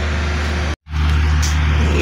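Steady low machine hum, like a motor or engine running, that breaks off completely for a moment just under a second in and then carries on unchanged.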